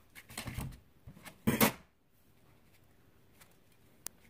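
Two short rustling, scraping handling sounds, the second louder: hands working dissecting scissors and pins against a plastic dissecting tray.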